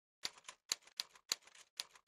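Typewriter key strikes used as a sound effect: a sharp clack about three times a second, each followed by a softer click, one per character as text is typed out.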